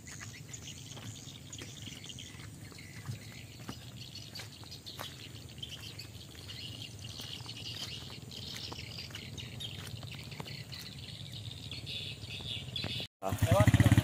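Quiet rural outdoor ambience with birds chirping and scattered soft footsteps on a muddy dirt road. Near the end a motorcycle engine comes in, running loud and low.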